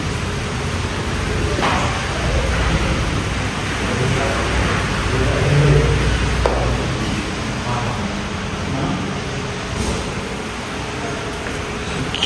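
Steady hiss of rain, with indistinct voices of people talking in the background.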